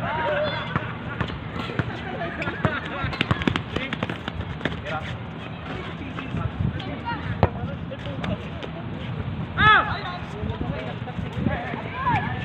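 Outdoor pickup basketball game: many short knocks and thuds from the ball and players' shoes on the hard court, with players calling out now and then and one loud, short high-pitched cry about ten seconds in.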